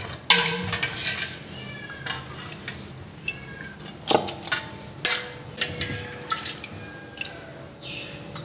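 A steel spoon stirring watery rice in an aluminium pot: liquid sloshing, with several sharp metal-on-metal clinks, the loudest near the start and about halfway through.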